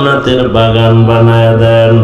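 A man's voice chanting a prayer of supplication, drawing out one syllable into a long held note for about a second and a half.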